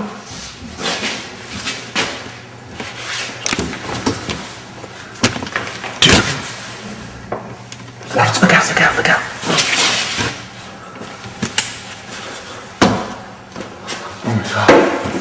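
Jostling and scuffling around a pantry door, with several sharp knocks and bangs, the loudest about six seconds in and again near the end. Panicked breathing and muffled voices run underneath.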